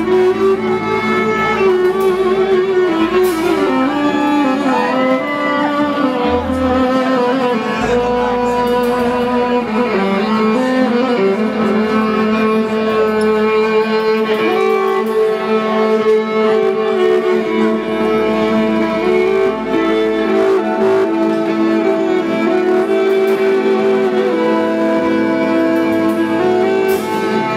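Electric violin playing a bowed melody with sustained and sliding notes, over a band's bass line.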